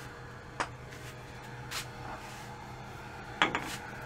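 A few small metal clicks and knocks, one about half a second in and a cluster near the end, as a cotton buffing mop's mounting bolt is fitted into the lathe chuck.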